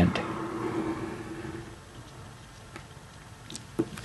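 Faint handling sounds of a plastic ruler and a biro on paper on a desk: soft scratching and small clicks, with one sharper knock near the end as the ruler is shifted on the paper.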